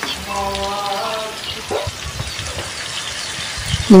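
Chicken pieces in spice paste and sweet soy sauce sizzling in a hot pan, a steady hiss. A brief held pitched tone sounds near the start.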